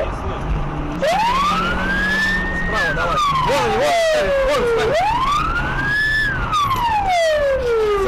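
Police car siren wailing in two slow cycles, each rising over about a second and a half and then falling over about two seconds, with the car's running drone underneath.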